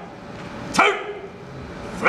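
A single short, sharp shout about a second in, a bark-like yell that drops in pitch, over the low hum of a hall crowd.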